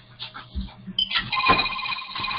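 Electronic telephone ring starting about a second in: several steady high tones sounding together, loud and continuing on.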